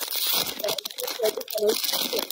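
A voice speaking in short fragments over constant crackling, rustling noise.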